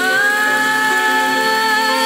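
A young girl's solo singing voice holds one long high note, rising slightly in pitch at the start, over a sustained accompaniment.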